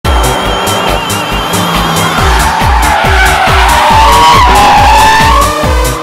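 Electronic music with a steady kick-drum beat, over car tyres squealing as a car slides sideways. The squeal is loudest about four to five seconds in.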